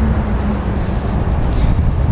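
Steady low outdoor rumble, with a faint thin high whine that stops near the end.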